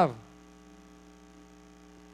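Steady, faint electrical mains hum with a low buzz, heard after the last spoken word trails off at the very start.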